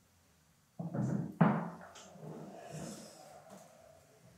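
A heavy supercharger unit being set in place on a workbench: a short run of handling noise, then a sharp knock about a second and a half in, followed by quieter shuffling that dies away.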